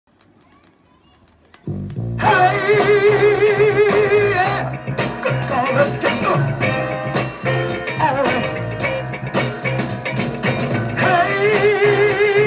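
A 1969 soul-funk single playing from a 7-inch vinyl record on a turntable. After a faint opening of under two seconds, the bass comes in, and the full band joins about two seconds in with a steady beat and held, wavering tones.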